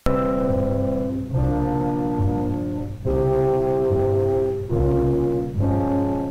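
Orchestral music led by brass, playing long held chords that change about every second and a half; it starts suddenly at the opening.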